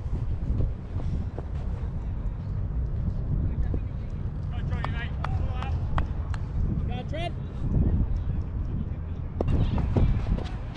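Steady low rumble of wind buffeting a chest-mounted GoPro's microphone, with a few short calls from distant voices about five and seven seconds in.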